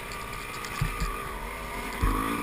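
Dirt bike engine running steadily, heard from a camera riding on the bike or rider, with two short low thumps about a second in.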